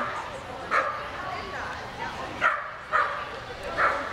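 Shetland sheepdog barking during an agility run: short, sharp yaps, about five spread over four seconds, over a steady background.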